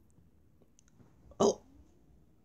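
A man's single short, sharp vocal sound, like a hiccup, about one and a half seconds in, against quiet room tone.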